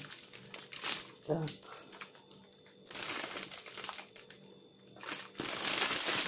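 Crinkling of shiny plastic sweet bags being handled and turned over, in uneven bursts with a quieter lull in the middle and louder rustling near the end as a large bag is picked up.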